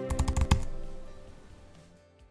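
Channel logo sting: a quick run of about six sharp clicks in the first half-second over music that fades away toward the end.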